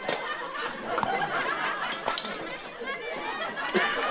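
Several voices and laughter mixed together, with a few sharp clicks.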